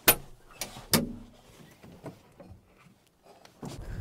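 A tractor cab door's latch clicks open, followed by two more knocks as someone climbs out of the cab. Near the end, wind buffets the microphone.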